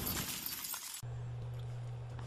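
Sound effect of glass shattering, its tail of tinkling fragments fading away and cutting off abruptly about a second in. A steady low hum follows.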